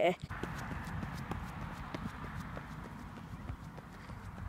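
Running footsteps on a tarmac path, a quick series of soft ticks over a low rumble of phone-handling noise.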